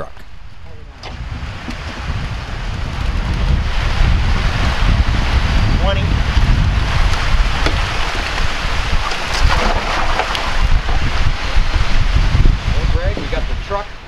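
Wind buffeting the microphone outdoors: a loud, gusty low rumble with a steady rushing hiss over it, building over the first few seconds and holding.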